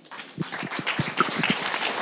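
Audience applauding, the clapping starting up about half a second in and then going on steadily.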